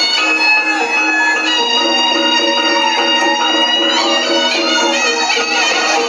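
Reog gamelan accompaniment led by the slompret, a reedy shawm, playing long held notes that change every second or two over steady low sustained tones.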